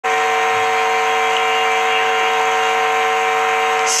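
A steady musical drone: one pitched note with many overtones, held without a break or change of pitch.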